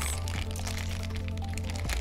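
Background music with a steady low bass line, over small clicks and crinkles from a plastic bag of plastic game pieces being handled.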